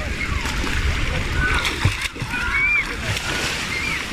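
Splashing of children playing in shallow seawater, with high children's voices calling out throughout.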